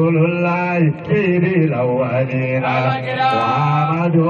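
A man chanting a devotional song into a microphone: one voice in long held notes that slide and bend between pitches, without a break.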